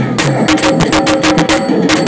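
Live folk-dance accompaniment: fast, driving drum strokes, several a second, over a held melody line, as played for a Chhau dance.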